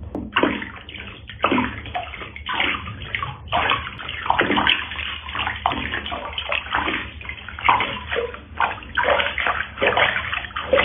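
Water sloshing and splashing in a plastic basin as hands wash a cat, in irregular repeated splashes.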